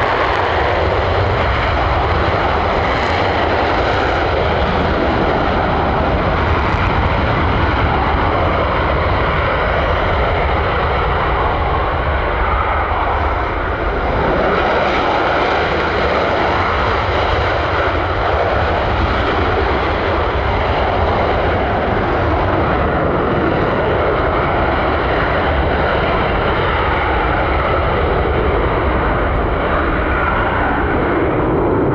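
An F-15 jet taking off on afterburner, a loud, steady jet noise that holds throughout.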